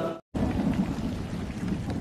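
Heavy rain falling as a steady hiss. It starts just after a brief dropout near the start.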